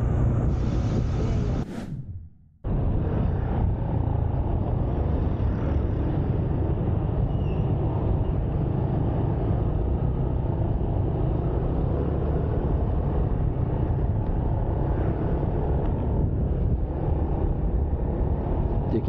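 Steady low rumble of a motor scooter being ridden, its engine drone mixed with wind and road noise. The sound drops out for about a second near the start, then carries on evenly.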